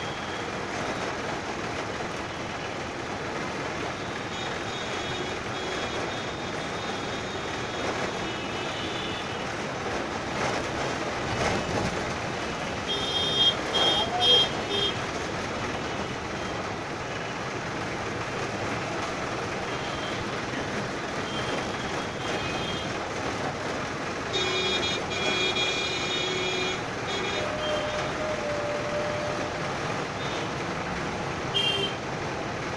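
Heavy city traffic heard from inside an Ashok Leyland Stag minibus: the bus's engine and road noise run steadily while other vehicles honk their horns, loudest in a burst about halfway through and again in a longer spell near the end.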